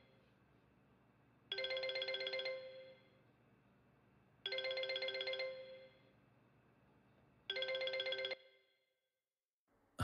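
Mobile phone ringtone: a short musical phrase repeating about every three seconds, three times, the last one cut off short as the call is answered.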